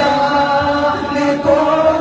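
A man singing a naat, a devotional Urdu praise poem, into a handheld microphone in a chant-like style, holding long notes that slide from one pitch to the next.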